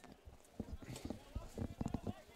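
Faint field sound from a soccer game: a few scattered soft knocks with distant voices.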